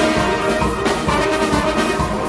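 Concert wind ensemble playing a lively, rhythmic passage: clarinets, flutes, saxophones and brass over a regular percussion beat.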